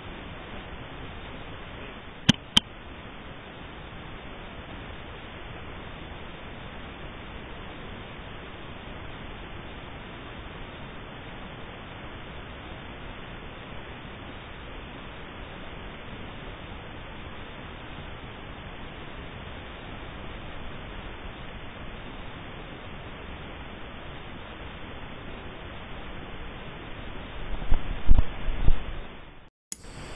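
Steady hiss from a thermal spotter's built-in recording, with two sharp clicks about two seconds in and a few low thumps near the end.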